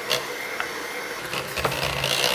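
Electric hand mixer running steadily, its beaters whisking a soft dough mixture in a stainless-steel bowl, with a couple of brief knocks.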